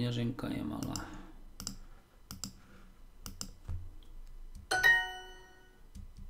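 Duolingo app interface sounds: a few soft clicks as word tiles are tapped into the answer line, then a single bell-like chime about five seconds in, ringing out for about a second.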